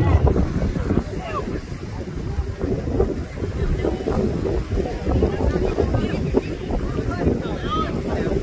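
Wind buffeting the microphone in a steady low rumble, with faint distant shouts from players across the field.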